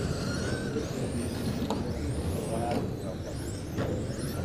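Several electric RC touring cars running on a track: high-pitched motor and gear whines that rise and fall in pitch as the cars accelerate and brake, over a steady background noise.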